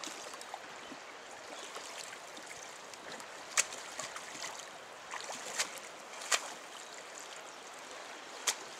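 River water flowing steadily past the bank, with a few short splashes around the middle as a salmon is held in the shallows.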